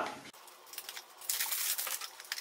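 A small paperboard product box being opened by hand: the cardboard flap and sleeve rustle and scrape, with a crackly patch of noise in the second half as the box slides open.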